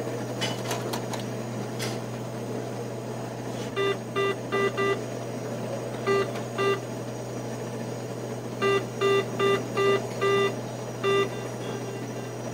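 ATM keypad beeps over the machine's steady hum: a few faint clicks, then short button-press beeps in quick groups of four, two, five and one.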